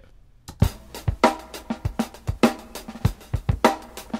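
A recorded drum-kit loop playing back, with kick, snare and cymbal hits starting about half a second in. It is a two-bar section of drumming, marked off to cycle as a loop.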